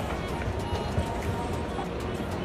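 Shopping-mall ambience: background music and the chatter of people, over a steady low rumble.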